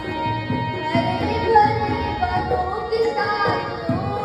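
A boy singing a song into a microphone, accompanied by tabla.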